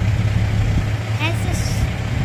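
Steady low engine drone from the heavy transporter moving a Starship rocket along the road. A faint voice comes in briefly just past the middle.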